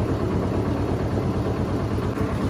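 Manitou telehandler's diesel engine idling with a steady, low pulsing rumble.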